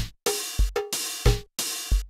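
Step-sequenced drum-machine loop of TR-707-style samples: a kick about every 0.6 s with snare and an open hi-hat whose bright hiss cuts off sharply before each short gap.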